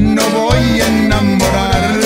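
Tejano conjunto music: button accordion and bajo sexto playing over a bass line with a steady beat.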